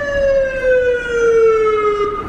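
Emergency vehicle siren, one long wail sliding slowly down in pitch and fading out just as it ends.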